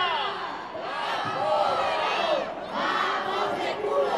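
Crowd of protest marchers shouting a slogan together, the many voices blending into three loud shouted phrases about a second long each, with short breaks between.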